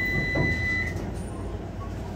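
Docklands Light Railway train's low interior rumble, fading as the train slows to a stop. A thin, steady high-pitched whine runs with it and cuts off about a second in.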